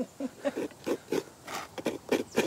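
A person laughing in a quick run of short chuckles.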